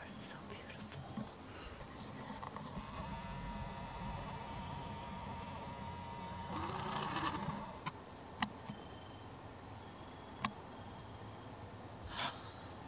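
A camera's lens motor whirs steadily for about five seconds while zooming or refocusing, then cuts off sharply. Two sharp clicks follow about two seconds apart.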